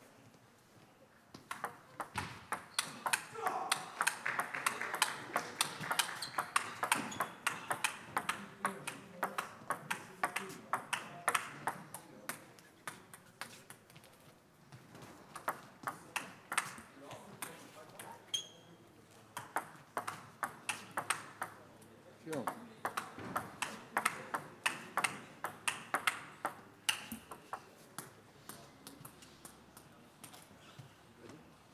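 Table tennis ball clicking back and forth off bats and table in a rapid rally, several hits a second, with voices talking underneath. The rally stops and the clicks thin out near the end.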